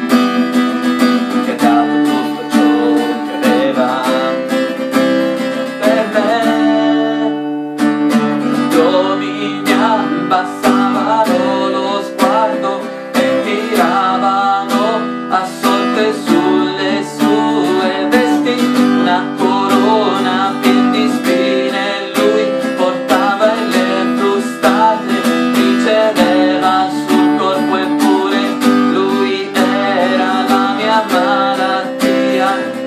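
Acoustic guitar strummed in a steady rhythm, with a man singing along over it.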